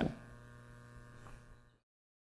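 Faint room tone with a steady electrical hum, cutting off suddenly to total silence near the end.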